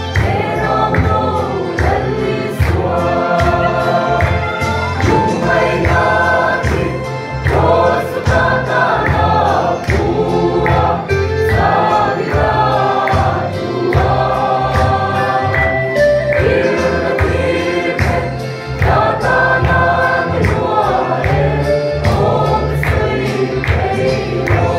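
Mixed choir of women and men singing a hymn in Mizo, over an accompaniment with a steady bass and beat.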